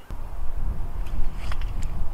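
Low, steady rumble of wind buffeting the microphone, with a few faint clicks.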